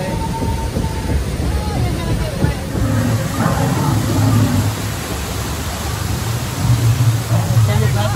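Rushing whitewater around a river-rapids raft, with wind buffeting the microphone in heavy low gusts about three seconds in and again near the end.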